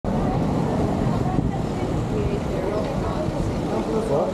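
Street traffic: cars driving past close by on a cobbled street, a steady low rumble, with passers-by talking faintly in the background.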